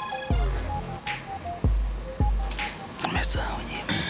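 Background hip-hop beat with deep bass kicks that drop in pitch and hang on, over a short repeating synth melody. A brief voice comes in about three seconds in.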